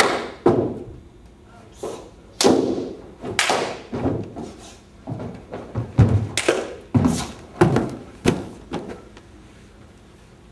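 A wushu athlete's landings, stomps and slaps during a Changquan form on a carpeted floor: about a dozen sharp thuds and smacks, irregularly spaced, each with a short room echo, falling away near the end.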